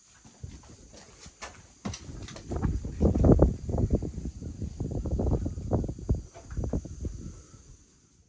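Footsteps and camera-handling noise: a run of irregular low thuds and scuffs with a few sharp clicks, loudest a few seconds in.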